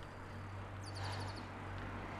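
A bird's quick run of about eight high chirps, a little under a second in, over a steady low rumble of road and wind noise from the moving bicycle.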